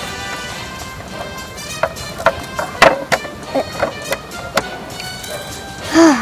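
Background music with steady held tones, with a scatter of short clicks and rustles through the middle as plastic model horses are handled among dry leaves.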